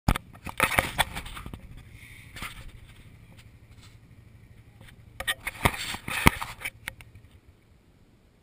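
Knocks, clicks and rustling of a small action camera being handled and set down in grass, in two bursts: one in the first second and a half and another from about five to seven seconds in.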